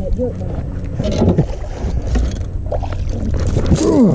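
Steady low wind rumble on the microphone aboard a small fishing boat, with a man's brief exclamations as a hooked bass is brought alongside and swung onto the deck near the end.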